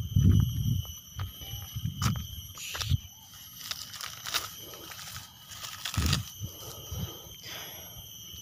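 Dry maize-stalk mulch rustling and crackling as a hand pushes into it, between dull thumps of footsteps and handling. A steady, high insect chorus runs behind.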